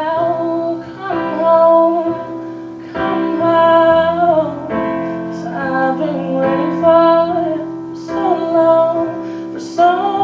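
A young woman singing a pop ballad into a microphone with live electronic keyboard accompaniment: sung phrases with long held notes over sustained keyboard chords.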